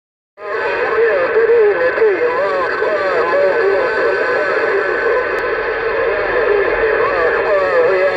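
Another station's voice coming over a Uniden Grant LT CB radio's speaker, narrow-band and unintelligible, with a steady whistle tone under it. It starts about half a second in.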